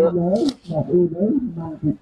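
Speech only: a man talking loudly.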